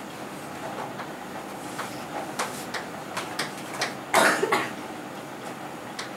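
Chalk writing on a chalkboard: a string of short taps and scratchy strokes as the letters are formed. About four seconds in there is a louder, half-second cough.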